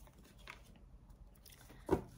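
Faint handling of tarot cards as one is drawn from the deck and laid face up on a cloth-covered table, with a short louder sound just before the end.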